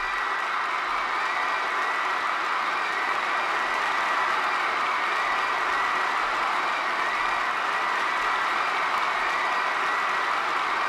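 Crowd applause: a steady wash of many hands clapping that holds at an even level throughout.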